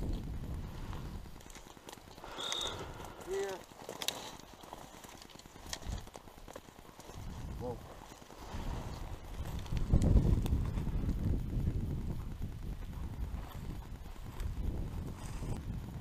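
Footsteps swishing and crunching through tall, dry, matted grass and weeds as a hunter walks the field, heard up close on the camera. A low rumble on the microphone grows louder about ten seconds in.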